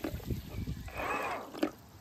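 Water in a plastic tub sloshing and settling as a DIY electric thruster is throttled back, its churning dying away at the start. A short pitched sound comes about halfway through, and a sharp click comes near the end.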